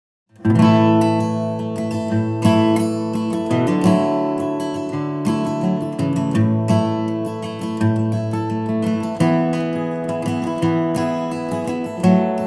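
Background music led by acoustic guitar, with plucked notes and chords throughout, starting about half a second in.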